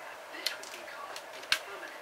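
Light metal clicks and taps from prying the shield out of a small steel ball bearing with a T-pin. The sharpest click comes about a second and a half in.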